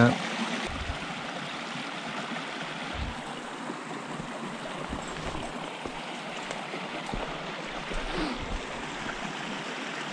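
Small creek water running over rocks and through shallow riffles: a steady, even rush of flowing water.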